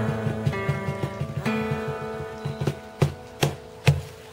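Acoustic guitar and cajon winding up a song: ringing guitar chords over an even hand-drum beat, thinning out over the last couple of seconds, then three sharp final drum hits near the end.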